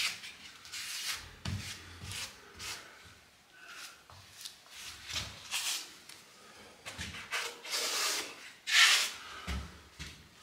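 A rubber grout float swept and scraped across ceramic wall tiles, pressing grout into the joints, in a series of irregular rubbing strokes. The loudest stroke comes about nine seconds in.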